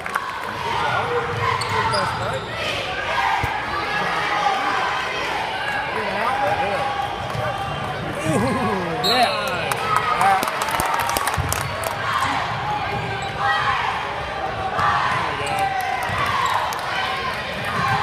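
A crowd of spectators talking and calling out in a gymnasium during a basketball game, with a basketball bouncing on the hardwood court now and then.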